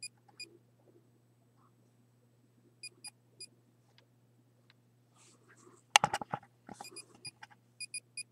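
Short, high electronic beeps come a few at a time: one just as it begins, three around three seconds in, and a quick cluster near the end. Under them runs a faint, low, steady electrical hum. A brief burst of handling noise comes about six seconds in.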